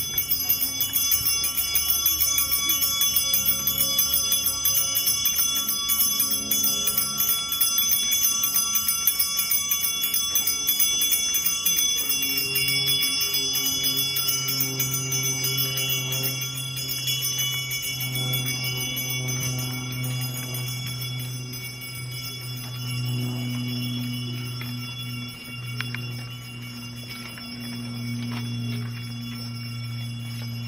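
Church bells pealing, several bells ringing together; they start abruptly, and from about twelve seconds in a deeper, steadier hum comes to the fore.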